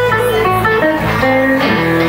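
Electric blues guitar playing a single-note lick over bass guitar, the notes stepping quickly up and down.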